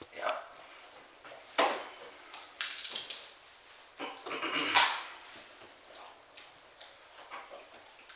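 A standard poodle in labour vocalising briefly a few times, with the loudest sound about five seconds in.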